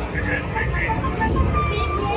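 Voices and music from the pirate show scene's soundtrack over a steady low rumble, with a held note in the second half.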